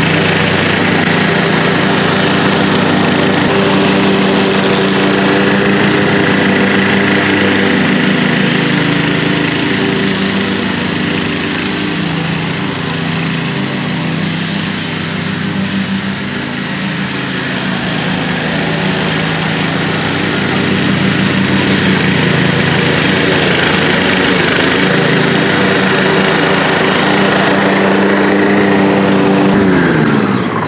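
A PowerSmart 209cc single-cylinder four-stroke walk-behind mower engine running steadily under load, cutting thicker grass with side discharge. It grows a little quieter midway as the mower moves off, then louder again as it comes back.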